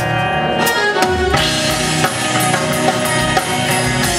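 Live rock band playing an instrumental passage between sung lines, with a drum kit keeping the beat under sustained keyboard chords and bass.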